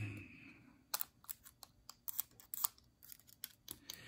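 Faint, irregular small clicks and taps from a piston and its new rings being handled and turned in the hands while they are oiled.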